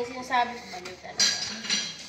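Kitchen dishes clattering as a tray and pots are handled: knocks and bright, ringing clinks of crockery and metal, the loudest clink a little over a second in and another shortly after.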